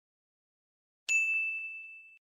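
A single bright bell-like ding sound effect about a second in, one high ringing tone that fades away: the lightbulb "idea" cue.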